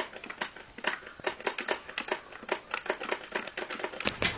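Plastic buttons of a Guitar Hero guitar controller clicking rapidly and irregularly, several clicks a second.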